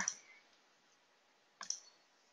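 A computer mouse click near the end, two quick ticks close together.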